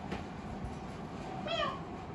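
Alexandrine parakeet giving one short meow-like call about one and a half seconds in, mimicking a cat's meow.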